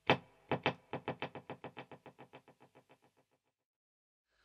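Electric guitar playing one short staccato note through a Walrus Audio ARP-87 delay feeding a Boss DD-3T delay in series. The second delay repeats the first delay's repeats, so the echoes come closer and closer together as they fade out over about three seconds.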